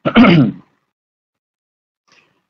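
A man's brief vocal sound, a short chuckle-like or throat-clearing burst of about half a second at the start, then silence.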